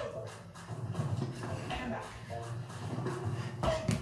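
Indistinct voices in an echoing room, with a few knocks from hands and sneakers landing on a tiled floor during side-to-side hops; the loudest knock comes near the end.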